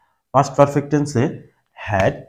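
Speech only: a man talking in two short phrases with brief pauses between them.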